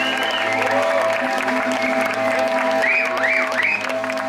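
Live band with electric guitars and bass holding long sustained notes, with audience applause over the music. A wavering high tone rises and falls a few times about three seconds in.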